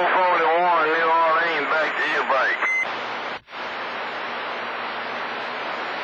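A distorted, warbling voice comes through a CB radio receiver picking up channel 28 skip, and ends with a short steady beep. After a brief dropout the signal is gone, leaving steady radio static hiss with a faint hum.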